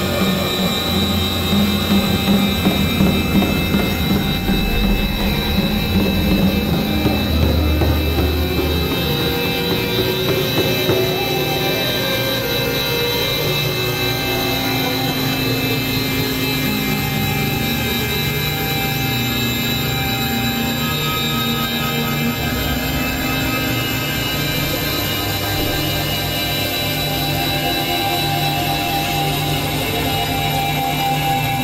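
Experimental electronic drone music played on synthesizers (a Novation Supernova II and a Korg microKORG XL): many sustained tones layered over a shifting low bass. The bass pulses unevenly for the first ten seconds or so, then the whole texture settles into a steadier drone.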